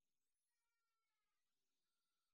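Near silence: a pause in the sermon, the audio all but muted.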